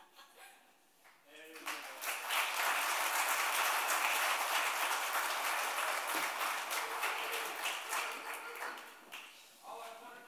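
Church congregation applauding: the clapping starts about a second and a half in, holds steady, then fades out near the end.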